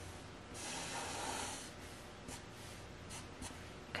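Black marker drawing a stroke on paper: a faint scratchy hiss lasting about a second, followed by a few light taps.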